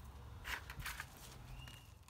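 Brief rustling of clematis leaves and stems handled with gloved hands and secateurs, two short rustles about half a second and nearly a second in, over a faint low rumble.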